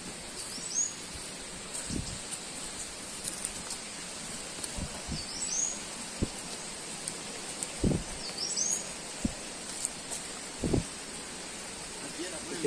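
A songbird gives a short, high call that sweeps upward, three times a few seconds apart, over the thudding footsteps of hikers on a rocky dirt trail.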